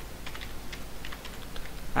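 Computer keyboard being typed on, a scattering of light, irregular keystrokes spelling out a word, over a low steady electrical hum.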